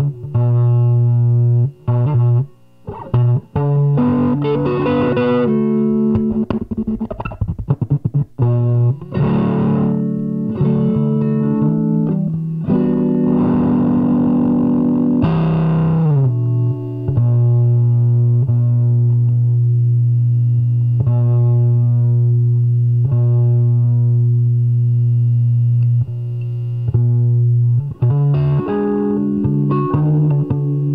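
Nine-string electric guitar played through a small 1-watt amp into an Ampeg 8x10 bass cabinet, with a slightly distorted tone. Picked low notes and a dense chord give way, about halfway through, to one low note held for about ten seconds and struck again a few times.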